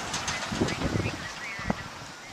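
Outdoor street ambience: a steady rushing hiss with a few soft low thumps about halfway through, a sharp click near the end, and faint bird chirps.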